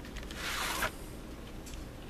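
A short sliding scrape of a cardboard VHS tape sleeve being handled. It lasts about half a second and stops abruptly just under a second in.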